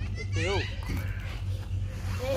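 A young child's high voice, one short utterance about half a second in, over a steady low hum.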